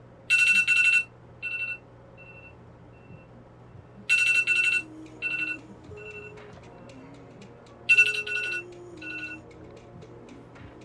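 Smartphone alarm going off: bursts of rapid, high electronic beeping that repeat about every four seconds, each followed by a few fainter beeps. Soft music plays underneath from about halfway through.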